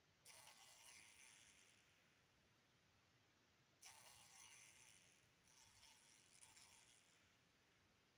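Near silence broken by two faint spells of raspy buzzing: a housefly trapped in a spider's web, struggling in short bursts. The first spell lasts about a second and a half; the second comes in fits lasting about three seconds.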